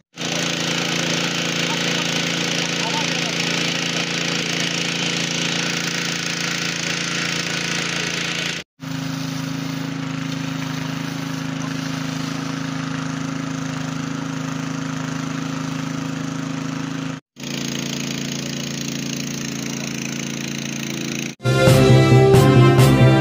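Fire hose jet spraying water onto burning garbage, a steady rushing hiss with a steady engine drone beneath it, in three stretches broken by two brief cuts to silence. Near the end a loud music sting comes in.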